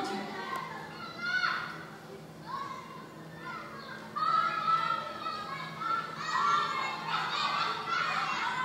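Children playing: many young voices shouting and calling over one another. The voices get louder from about halfway through.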